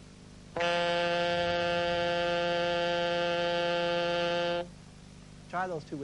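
Saxophone playing low D, fingered with left-hand keys 1, 2, 3 and right-hand keys 1, 2, 3 and the octave key released: one steady held note of about four seconds that starts about half a second in and stops cleanly.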